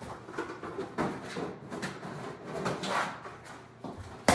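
Footsteps on a kitchen floor with scattered soft knocks and clicks of household handling, irregular and roughly twice a second.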